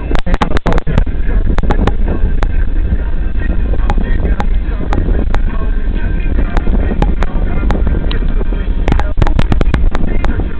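Steady road and engine rumble of a moving car heard from inside its cabin, with many sharp clicks scattered through it, thickest in the first second and again near the end.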